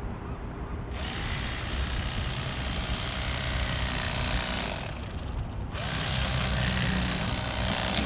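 Bubba battery-powered electric fillet knife running while it cuts a black rockfish fillet. It starts about a second in, stops briefly past the middle, then runs again.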